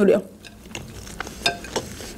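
Faint crackling and a few soft clicks as a thin slice of lahmajun flatbread is lifted off a plate and folded by hand.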